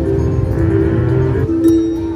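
Double Jackpot Gems three-reel slot machine spinning its reels, playing an electronic tune of bell-like tones that step in pitch over a low hum.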